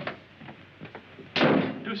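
A few light knocks, then a loud, sharp bang with a short ring about one and a half seconds in.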